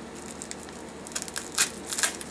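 A plastic bubble mailer being pierced and cut with a folding knife blade: faint crinkling of the plastic, then two sharp crackles near the end as the film gives way.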